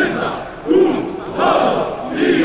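Crowd of men chanting a patriotic slogan in unison, "Bóg! Honor! Ojczyzna!" (God! Honour! Fatherland!). The words come as loud shouted bursts in a steady rhythm.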